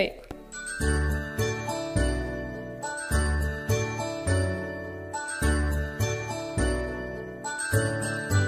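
Instrumental backing music for a children's alphabet song: a chiming, bell-like melody over a steady bass line, starting about a second in.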